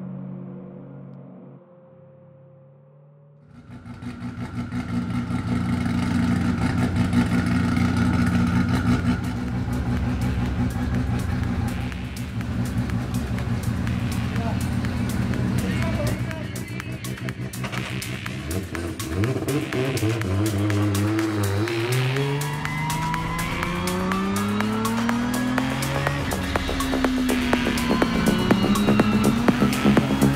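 Background music with a steady beat over a race car engine. The engine revs up and down again and again in the second half.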